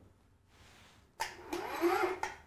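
ActSafe ACC battery-powered power ascender's electric motor starting a little over a second in and speeding up, its whine rising in pitch as it gets louder.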